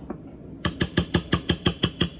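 A metal spoon clinking rapidly against a ceramic bowl as a mixture is stirred or beaten, about six even clinks a second, starting about half a second in.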